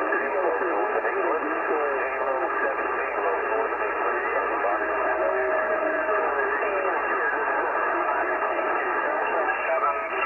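Many single-sideband voices calling over one another through a CB transceiver on 27.385 MHz lower sideband, thin-sounding and cut off above about 3 kHz, too jumbled to make out. A steady whistle-like tone is held for a couple of seconds in the middle. This is a pileup of distant European stations coming in at once on strong skip.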